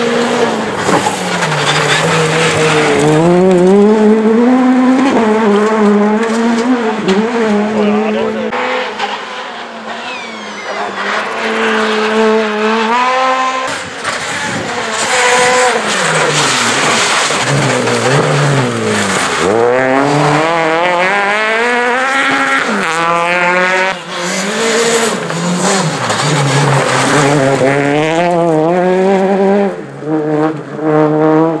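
Small four-cylinder rally cars revving hard past the camera one after another on a gravel stage. The engine note climbs and drops again and again as they shift gears and lift off, and the tyres rush on loose gravel.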